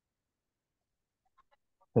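Near silence, the call's audio cut to nothing, with a few faint ticks late on. A voice starts speaking just before the end.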